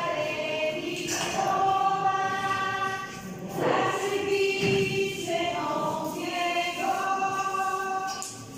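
A choir singing a slow sacred song in long held notes, the pitch moving from note to note every second or two.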